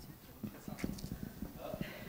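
Handheld microphone being handled as it changes hands: a quick run of irregular low bumps and knocks, with faint murmured voices in the room.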